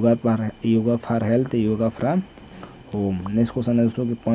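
Steady high-pitched insect trill, the chirring of crickets, running behind a man talking.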